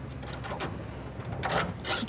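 Keys clicking and rattling in a shop door's lock: a few small clicks, then two louder scraping rattles near the end.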